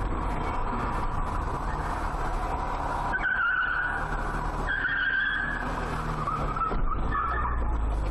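Steady road and engine noise of cars driving on a city street. Tyres squeal briefly about three seconds in and again about five seconds in, with a fainter squeal near the end.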